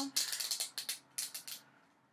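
A thin plastic seal being picked and peeled off a small jar of loose eyeshadow powder: a quick run of sharp plastic clicks and crinkles that stops about one and a half seconds in.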